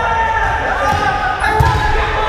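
A rubber dodgeball bouncing on a wooden gym floor, the clearest thump about one and a half seconds in, over players talking in the gym.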